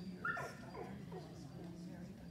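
A dog gives a short whine about a quarter second in, falling in pitch.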